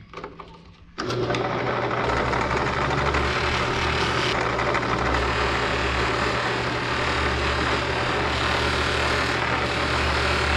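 Bench drill press switched on about a second in after a few clicks, then running steadily with a buffing wheel in its chuck while a piece of the knife is held against the wheel to polish it.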